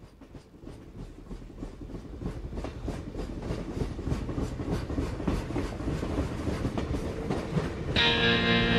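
A train rolling along the rails, a regular clickety-clack of about three beats a second that grows steadily louder as it approaches.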